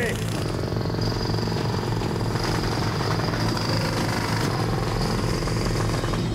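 Pneumatic jackhammer hammering steadily into hard clay: a rapid, continuous rattle over a steady low hum.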